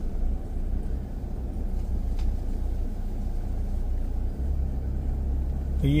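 A car being driven slowly on a narrow paved road: steady low engine and tyre rumble. The deepest part of the rumble grows a little stronger about four seconds in.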